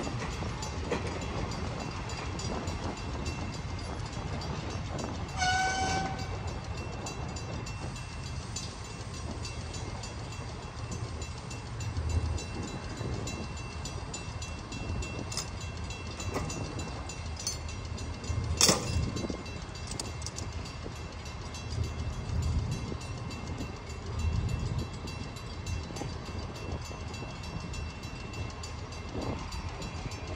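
Freight boxcars rolling slowly on yard track, a steady low rumble with soft swells as wheels pass. About five seconds in there is a short high squeal, and a sharp metal clank comes a little past halfway.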